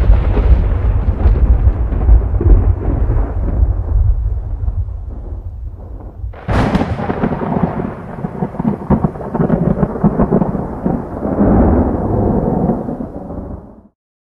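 Thunder sound effects: a sudden deep rumbling boom that fades over about six seconds, then a sharp crack of thunder about halfway through, rumbling and crackling on until it cuts off abruptly near the end.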